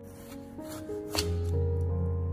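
Background music with held notes over a cleaver slicing through chilled pork belly onto a wooden cutting board, with one stroke landing sharply about a second in.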